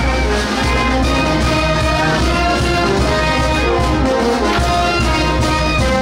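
Band music with brass playing held melody notes over a continuous low beat.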